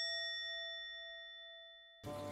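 A single bell-like chime sound effect, struck just before and ringing out with a slight waver in its lowest note, fading steadily away.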